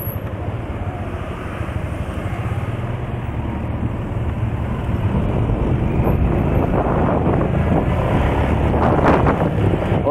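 Motorcycle engine running steadily while riding, with wind on the microphone, getting somewhat louder in the second half.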